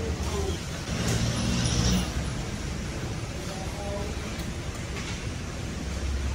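Steady low rumble of background noise with faint voices of people talking at a distance.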